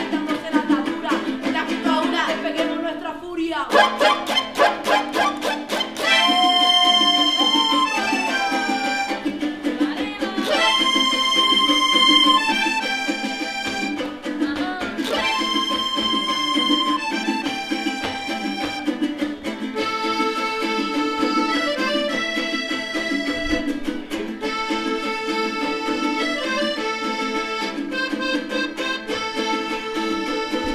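Diatonic button accordion and strummed jarana jarocha playing son, with two women's voices singing over them for the first few seconds. After a brief break the jarana strums alone for a moment, and then the accordion comes in, leading with long held notes over the strumming.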